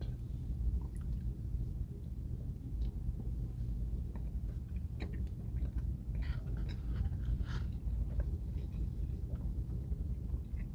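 A person chewing a bite of a footlong chili cheese coney, with soft wet mouth clicks and smacks that come thickest a little past halfway. A steady low hum in the car cabin runs underneath.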